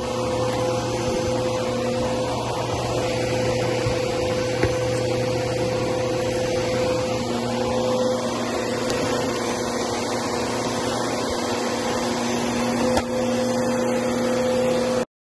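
Bissell bagless upright vacuum cleaner running steadily over a rug, its motor giving a steady hum under a rush of air. Two brief knocks, one about four and a half seconds in and one near the end.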